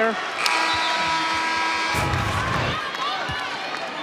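Arena sound of live basketball play: crowd voices, a few basketball bounces on the hardwood, and sneaker squeaks near the end. Through this runs a steady held tone lasting about a second and a half, starting about half a second in.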